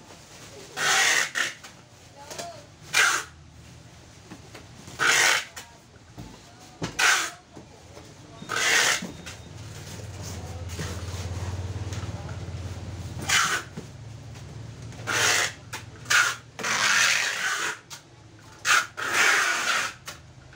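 Plastic wrapping rustling and a cardboard box being handled, in a series of short, sharp bursts. A low hum swells and fades about ten to thirteen seconds in.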